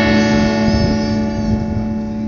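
A band's final chord ringing out on electric guitars, held steady and slowly fading with no new strokes.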